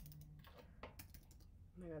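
Faint typing on a computer keyboard: a few scattered key clicks against near silence.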